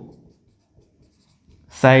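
Marker pen writing faintly on a whiteboard, between a man's words at the start and near the end.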